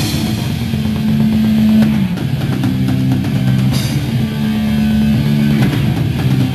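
Live rock band playing: electric guitars holding low chords that change about every two seconds, over a drum kit with cymbal crashes at the start and about four seconds in.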